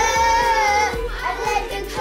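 Children singing "Blue, blue" in a children's English song, two long held notes followed by a shorter sung phrase, over a band backing track with a steady drum beat.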